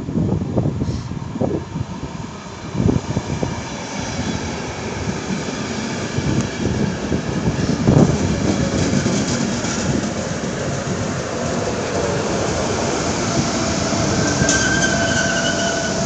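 Passenger train passing close by: the coaches' wheels rumble and clatter over the rails, with a louder knock about halfway. Near the end a steady whine comes in as the ČD class 163 electric locomotive draws level.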